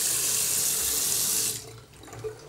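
A bathroom washbasin tap running in a steady hiss, then turned off about one and a half seconds in.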